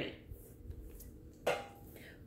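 Faint handling sounds, soft ticks and rustles, as a black leather crossbody purse with a metal turnlock is lowered and set aside, with one brief louder sound about a second and a half in.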